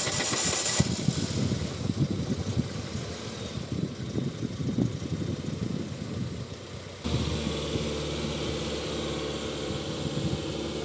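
Peugeot 405 car engine running while the car stands still: an uneven rumble at first that changes abruptly to a steady, even idle about seven seconds in.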